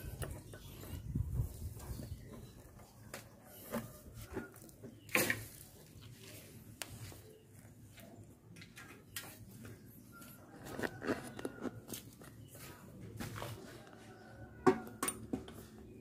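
Scattered faint knocks, scrapes and rustles of hands settling a kaffir lime's root ball into a white plastic plant pot, with one sharper knock about five seconds in.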